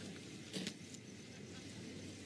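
A rock being picked up off a debris-strewn road: two brief, faint scuffs about half a second in, over a low steady hiss.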